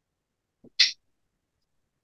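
A single short hiss of breath from a person, about a second in, in otherwise near silence.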